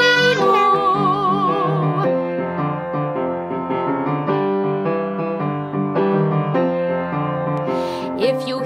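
Music: piano accompaniment of a children's song playing an instrumental break between sung lines. A held note with vibrato fades out over the first two seconds, and the piano chords go on steadily after it.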